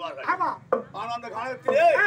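A man's voice delivering loud, strongly inflected stage dialogue through a handheld microphone and public-address system.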